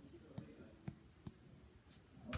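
Three faint sticky clicks as slime is picked off a foam squishy by hand, over near silence.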